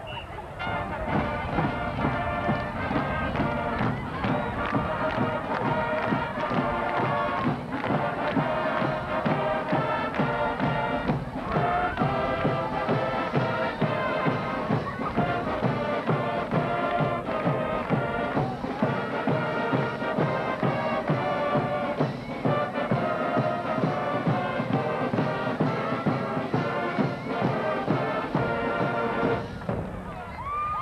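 High school marching band playing, brass over a steady drum beat. The music starts about a second in and stops just before the end.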